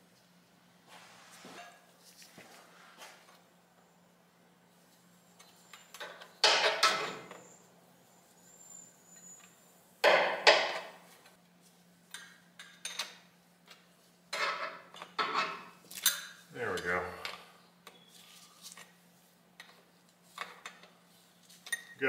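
Hand tools and steel fittings clinking and knocking against the engine in scattered bursts, as a fuel line and banjo fittings are fitted to a diesel lift pump. A steady faint low hum runs underneath.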